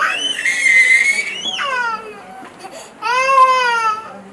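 Toddler crying in two long, high-pitched wails, the second starting about three seconds in.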